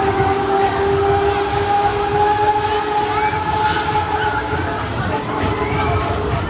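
Funfair ride scene around a Huss Break Dance ride: a long held tone with one overtone rises slightly in pitch and fades about four seconds in. Under it run a steady low rumble and crowd voices.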